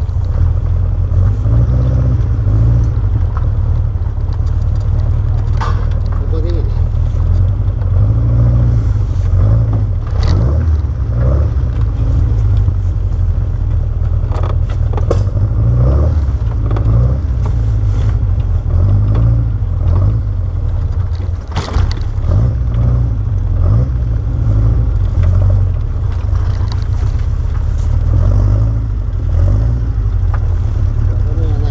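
Birkin Seven open sports car's engine running at low speed while the car moves slowly, a heavy low rumble picked up by the car-mounted camera.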